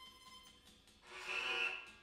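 Acoustic guitars played with bows: a thin high bowed tone at the start, then a louder, brighter swell about a second in that rises and fades out just before the end, over faint, quick, regular pulsing.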